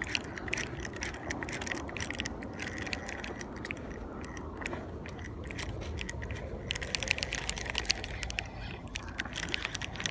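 Spinning reel being cranked, its gears and anti-reverse making dense, rapid fine clicks.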